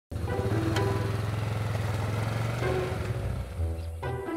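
Yamaha Big Bear quad bike engine running steadily under way, easing off near the end, with background music over it.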